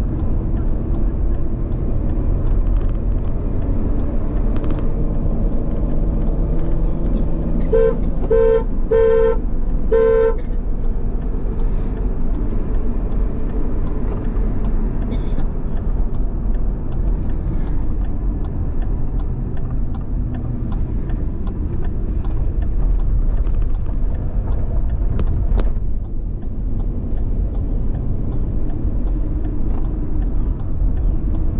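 Steady engine and road rumble heard from inside a moving car, with a car horn tooting four short times about a third of the way in.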